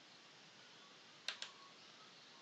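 Computer mouse button clicking twice in quick succession about a second in, against faint room hiss.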